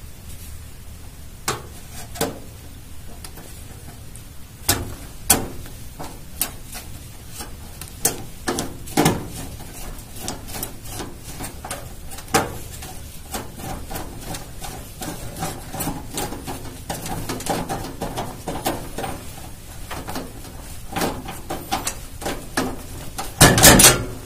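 Sharp metal clicks, taps and scrapes as a graphics card's steel mounting bracket and its screw are fitted into a PC case's expansion slot and screwed down, irregular throughout, with a louder clatter near the end.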